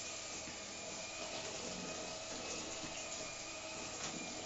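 Steady, even hiss of kitchen noise, with no sudden events.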